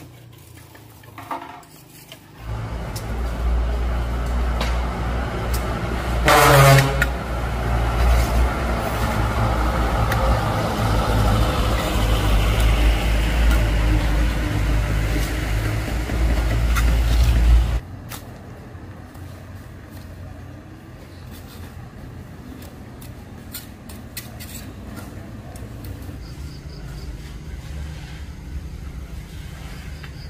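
A motor vehicle's engine running close by, a loud low rumble that builds over a few seconds, with a brief falling tone about six seconds in, then cuts off abruptly. After it come quieter scattered taps and scrapes of hand work.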